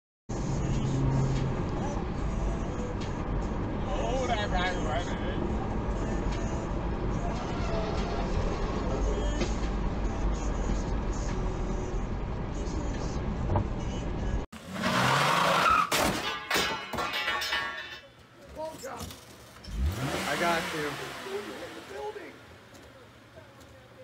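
Steady road and engine rumble inside a moving car, as recorded by a dashcam. About fourteen and a half seconds in, it cuts abruptly to a different, clearer recording with indistinct voices and uneven noises.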